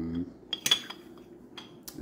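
Antique glass bottles clinking as they are handled: one sharp glass clink with a brief ring about two-thirds of a second in, and a lighter tick near the end.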